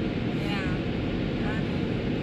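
Steady rushing noise of a tunnel car wash's water jets spraying onto the car, heard from inside the cabin.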